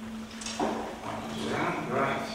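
Indistinct voice sounds at a lectern over a steady low hum. A short knock about half a second in, as a metal water bottle is set down by the microphone.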